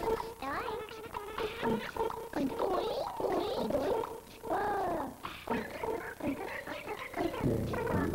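Animal calls: a run of short pitched cries that rise and fall, over a steady tone.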